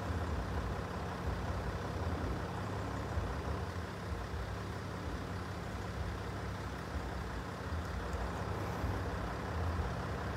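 Road vehicle engines idling, a steady low hum.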